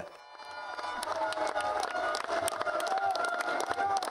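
Podium crowd noise: cheering and irregular clapping, with music playing over it, building up during the first second.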